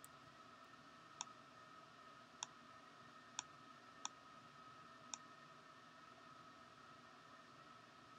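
Computer mouse clicks, five short sharp ones spaced about a second apart in the first five seconds, over a faint steady hum, as anchor points are selected and dragged in a drawing program.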